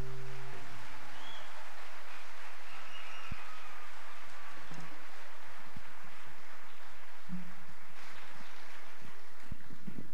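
Steady ambient noise of an open-air concert venue and its audience between songs, with a couple of faint high chirps or whistles early on.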